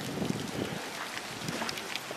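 Falling snow pellets tapping on a fabric grill cover and wooden deck boards, heard as a faint, steady patter.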